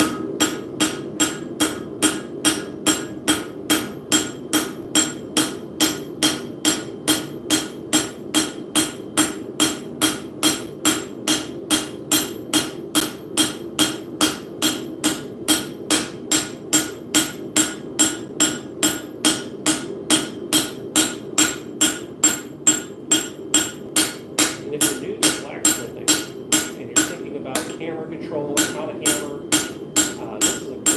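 Hand hammer striking a heated metal plate on an anvil in a steady rhythm, about two and a half blows a second, each blow ringing. There is a short break near the end before the blows resume.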